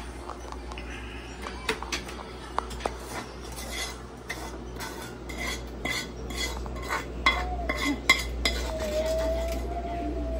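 A utensil scraping and clinking against the inside of a frying pan as sauce is scraped out of it: scattered clicks at first, then a busy run of quick clinks in the middle, with the sharpest knocks towards the end.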